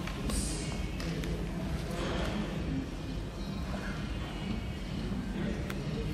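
Room ambience of murmuring voices and background music over a steady low hum, with a few sharp clicks.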